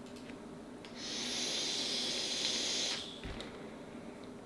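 An e-cigarette being drawn on: a steady hiss of air and vapour through the atomizer that starts about a second in and stops about two seconds later.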